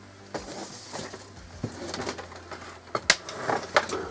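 Handling noise of laptops being picked up and moved: a few scattered clicks and knocks, the sharpest about three seconds in and another just before the end, over a steady low hum.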